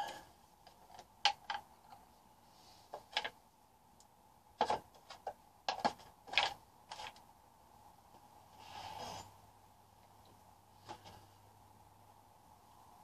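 Scattered light clicks and knocks of hands handling things on a painting work table, with a short scraping rustle about nine seconds in, over a faint steady hum.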